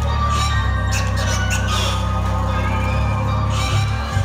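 Loud concert music over a venue sound system: sustained deep bass notes that change pitch a couple of times, with brief high bursts of sound over them.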